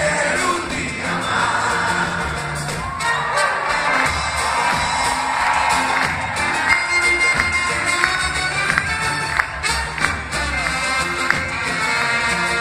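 Live acoustic folk band playing an instrumental passage between sung lines: strummed acoustic guitars, accordion, violin and drum kit, with crowd noise and cheering from the audience.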